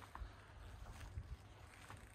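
Quiet footsteps on a concrete yard over a low rumble of wind on the microphone.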